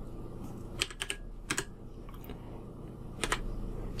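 Computer keyboard keys clicking in a few scattered keystrokes, some in quick pairs, with gaps of up to a second between them, as a misspelled word is deleted and retyped.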